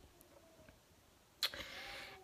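Near silence, then about a second and a half in a short, sharp intake of breath from a woman holding back tears.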